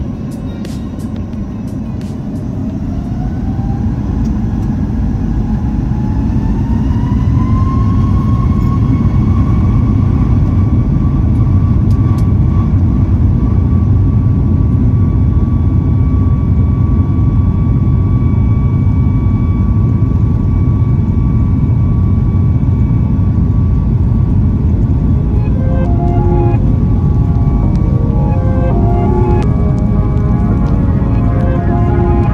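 Boeing 737 MAX 9's CFM LEAP-1B turbofan engines spooling up to takeoff thrust, heard from inside the cabin: a whine rises in pitch and loudness over the first several seconds, then holds steady over a heavy rumble as the jet rolls down the runway. Music fades in near the end.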